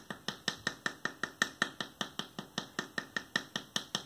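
Long wooden board used as a paddle lightly tapping a hollow, still-soft clay form in a quick, even rhythm of about five taps a second, compressing the clay to refine its rounded shape.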